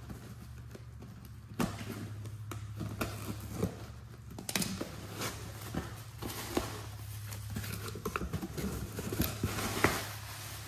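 A cardboard shipping box being opened by hand: tape pulled off, flaps pulled open and packing paper crinkling, with scattered knocks and rustles. A steady low hum runs underneath.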